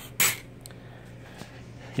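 One short clink of handled hardware parts about a fifth of a second in, with a fainter tick just after. Then a quiet, steady low hum.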